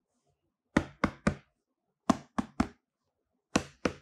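Gloved fingers tapping on a closed corrugated cardboard box, in quick runs of three sharp taps.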